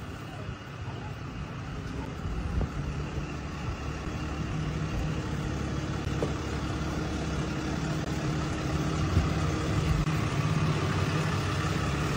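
Low, steady hum of a vehicle engine idling, growing gradually louder.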